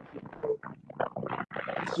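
A man's voice, faint and broken up into short choppy fragments over a video-call line, with no clear words.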